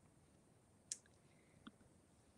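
Near silence with two faint, short clicks, about a second in and again near the end: a computer mouse clicked to advance a presentation slide.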